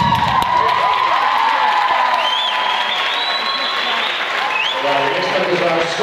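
Audience applauding and cheering at the end of a dance routine, with high-pitched shouts and whoops rising and falling over steady clapping.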